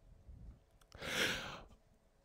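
A man's single short breath, about half a second long, taken close into a handheld microphone about a second in.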